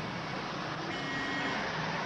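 Steady city street traffic noise, with a faint high tone coming in about halfway through. It cuts off abruptly at the end.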